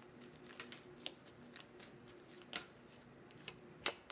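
Tarot cards being shuffled by hand: scattered soft snaps and flicks of card on card, the sharpest one just before the end.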